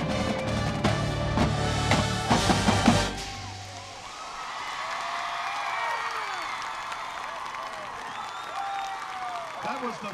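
Marching band and drumline playing the final loud chords of the show, with percussion hits, cutting off about three seconds in. The crowd then cheers, whistles and applauds.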